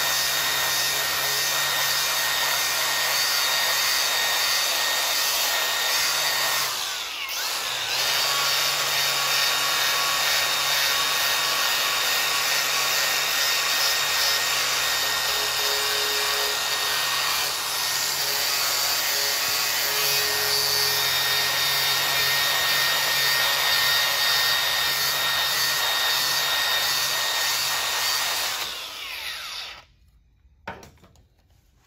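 Cordless angle grinder with a wire wheel brush scrubbing mill-scale residue off a steel plate. About seven seconds in it briefly drops away, and a cordless drill spinning a Scotch-Brite Clean and Strip abrasive disc takes over the plate, running steadily until it dies away just before the end.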